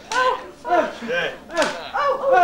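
Short bursts of voices calling out on stage, with a short, sharp crack of noise about one and a half seconds in.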